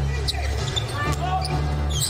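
Basketball being dribbled on a hardwood court during live play, with short knocks over a steady low background of arena music.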